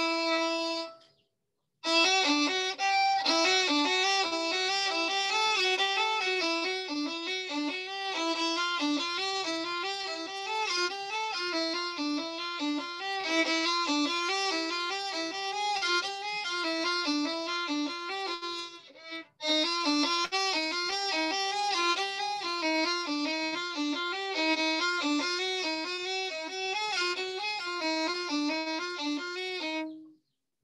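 Solo violin playing quick, even running notes in a practice exercise, slurred one measure to each bow. A held note ends about a second in, and the runs start after a short gap, break off briefly around 19 seconds, then go on.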